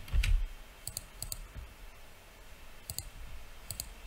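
Sharp clicks of a computer mouse and keyboard at a desk, mostly in quick pairs, about four times. A soft low thump comes right at the start.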